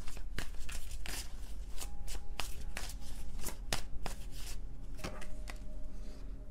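A tarot deck being shuffled by hand: a quick, irregular patter of card clicks and snaps.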